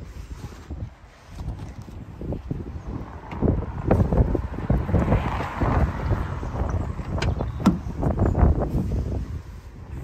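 Wind buffeting the microphone as a low rumble, with a few scattered clicks and knocks. Among them, near the end, is the car's driver door being unlatched and swung open.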